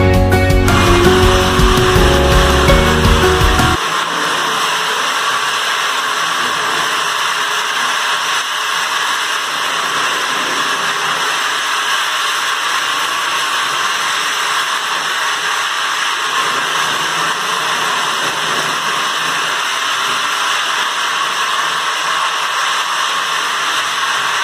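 Single-disc rotary floor machine grinding down high spots on a concrete floor: a steady, unchanging grinding noise. Music plays over the first few seconds and stops about four seconds in.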